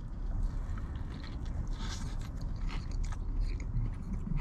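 Biting into and chewing a breaded fried chicken sandwich, with faint irregular crunches and small clicks.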